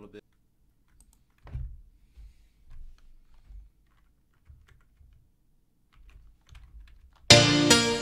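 Faint computer keyboard and mouse clicks with a few low desk thumps. About seven seconds in, a chord progression with melody notes starts playing loudly from a Nexus synth in FL Studio.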